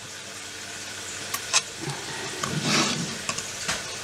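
A few small clicks and a short scrape of a screwdriver blade prying a Rover 14CUX ECU's chip out of its socket, over a steady hiss.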